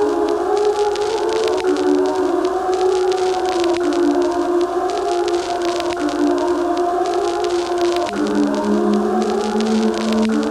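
Ambient music of long, held, wavering tones that slide slowly from one pitch to the next, siren-like, with a lower held note joining about eight seconds in.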